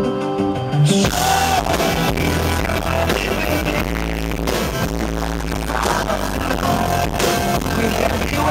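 A live pop-rock band: piano alone for about the first second, then drums, bass and guitar come in with a sung lead vocal. The sound is fuzzy and distorted from being recorded right in front of the PA speakers.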